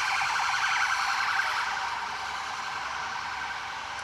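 Emergency vehicle siren warbling rapidly up and down, loudest at first and slowly fading.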